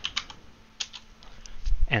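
Typing on a computer keyboard: a run of separate, irregular keystroke clicks.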